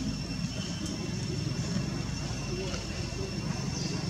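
Steady low outdoor background rumble, like distant traffic or voices, under a thin continuous high-pitched whine, with a faint short chirp near the end.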